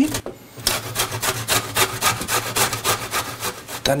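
Celeriac being grated on a stainless-steel box grater: quick, regular rasping strokes that start about half a second in.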